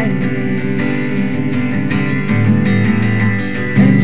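Acoustic guitar strummed in a steady rhythm, chords ringing: an instrumental passage of a solo acoustic singer-songwriter song.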